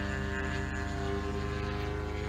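Engine and propeller of a radio-controlled model warbird droning steadily in flight, the pitch easing slightly down.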